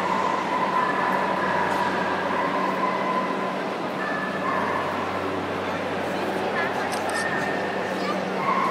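Small dogs yipping and whining over the steady chatter of a crowd in a large, echoing hall.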